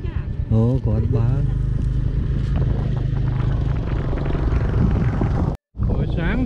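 Motorbike engine running steadily at low revs. It cuts off suddenly for a moment near the end.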